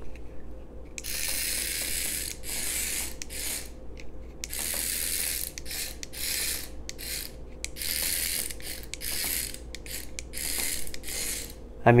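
Remote-control cockroach toy's tiny geared motor buzzing in repeated short bursts, starting and stopping as it is driven in spurts. The buzzing starts about a second in and runs in bursts of half a second to a second and a half.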